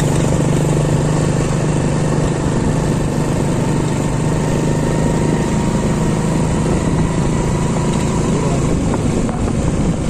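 An engine runs steadily with a low, even hum under a constant rushing noise, like a vehicle moving along.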